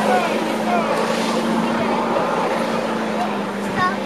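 Mud-bog vehicle's engine running hard and steady as it drives through the mud pit, heard at a distance, with people's voices over it.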